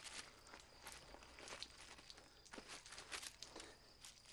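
Near silence, with faint scattered soft clicks and rustles.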